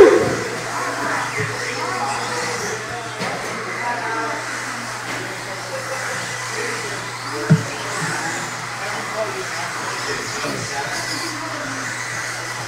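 Indoor RC race-track ambience: electric two-wheel-drive modified buggies running on the dirt, with faint voices over a steady low hum. A sharp knock about seven and a half seconds in.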